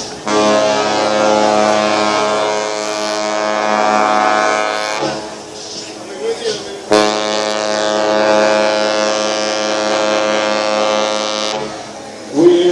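Two long blasts of a cruise ship's horn, each about five seconds, with a short pause between. They are part of a horn salute exchanged between two cruise ships as one leaves port.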